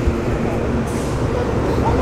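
Steady low rumble of vehicle noise, even throughout with no clear engine note or rhythm.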